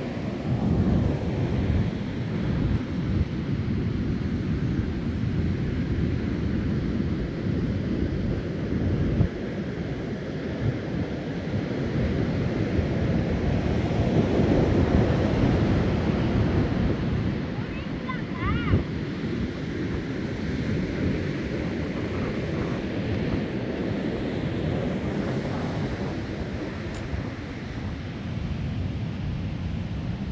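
Wind gusting against the microphone over the steady wash of breaking surf.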